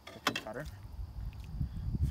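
A short spoken sound, then a low rumbling noise that grows louder toward the end.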